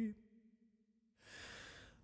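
A solo a cappella male singer's held note, still wavering with vibrato, fades out just at the start. After about a second of silence he takes one soft audible breath, lasting a little over half a second, between sung lines.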